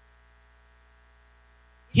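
Faint steady electrical mains hum, a low tone with fainter higher lines, in a pause between spoken phrases. A man's voice starts again right at the end.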